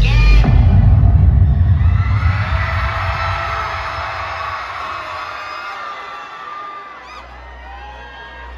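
Live concert sound in an arena: heavy bass from the PA fades away over the first few seconds while the crowd cheers and screams. A low, held electronic note comes in near the end.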